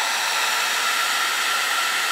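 Wagner heat gun running, a steady rush of blowing air with a faint steady whine, heating heat-shrink tubing over crimped wire splices.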